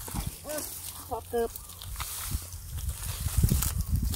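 A man's brief voiced exclamations, followed by low muffled thumps and rumble, loudest near the end, as his hands work through shallow mud and rice stubble.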